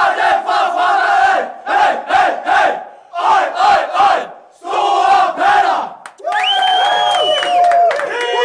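A group of men chanting together in celebration, shouting short phrases in a steady rhythm, then one long drawn-out held note near the end: a football team's dressing-room victory chant.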